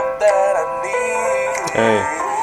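Music from a mashup medley: voices singing over keyboard accompaniment.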